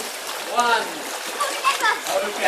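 Pool water splashing as people move and play in it, with short high voices calling out in the middle and again near the end.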